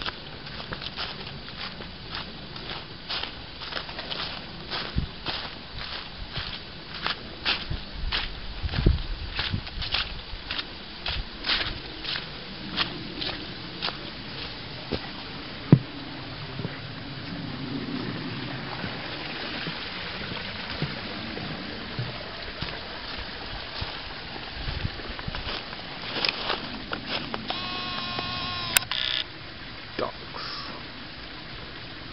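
Footsteps crunching through dry leaf litter on a woodland path, about two steps a second, giving way to a steadier rustling haze in the second half. A short pitched sound comes near the end, then the sound cuts off abruptly.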